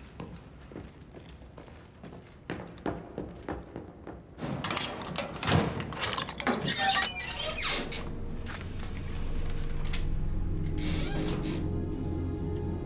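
Footsteps, then a combination padlock being handled and a metal school locker door rattling and clanking open, with brief metallic squeaks. Low, tense background music swells in near the end.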